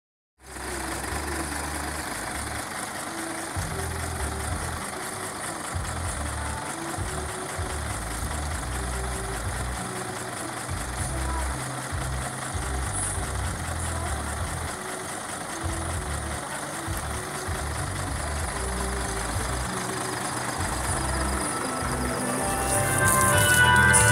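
Bass-heavy music from a decorated truck's sound system, its uneven bass thumps standing out, over the truck's engine idling.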